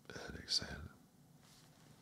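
A man's short whispered vocal sound, under a second long, with a sharp hiss about half a second in.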